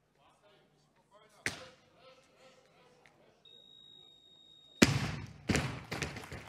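A loaded barbell with bumper plates dropped from overhead onto a weightlifting platform: a loud crash near the end with a second bounce half a second later. It is preceded by a single thud about one and a half seconds in and a steady high beep lasting over a second, the referees' down signal for a completed lift, with audience voices around it.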